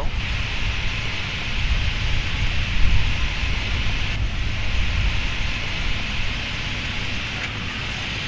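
Boeing 777 taxiing at idle power: a steady rushing jet noise over a deep, uneven rumble.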